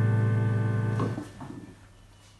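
Digital piano holding a chord; one last chord is struck about a second in, then the sound fades out as the keys are released, ending the piece.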